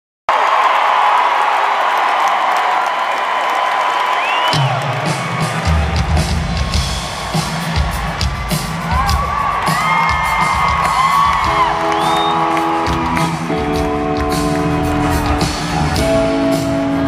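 Concert crowd cheering and whooping. About four and a half seconds in, a live band's drum kit and bass start a steady groove, and held chords join near the end while the whoops carry on over the music.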